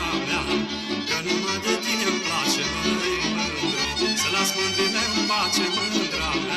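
Instrumental passage of Romanian Transylvanian folk dance music, with melody instruments over an even bass beat and regular percussion strikes.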